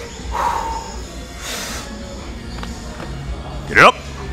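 Background music over gym noise, with a short, loud swoop that rises and falls in pitch near the end.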